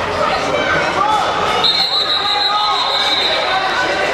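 Referee's whistle blown once, a steady high tone held for nearly two seconds, starting about a second and a half in, over the chatter of players and spectators in a large indoor hall.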